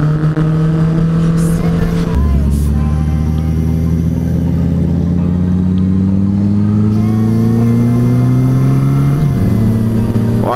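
Honda CB650F inline-four motorcycle engine running under way. About two seconds in the engine note changes, as at a gear change, and a deeper tone comes in. The pitch then climbs slowly as the bike accelerates, with another change near the end.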